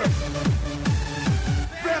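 Techno dance track: a deep kick drum that drops steeply in pitch on each hit, about two to three hits a second, under synth sounds, with a shouted voice coming in near the end.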